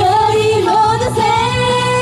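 Young female idol group singing in unison into microphones over a pop backing track through PA speakers, with a note held through the second half.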